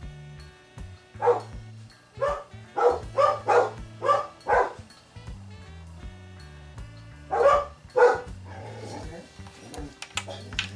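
A dog barking in two runs, about seven barks and then two more a few seconds later, over background music with a steady beat.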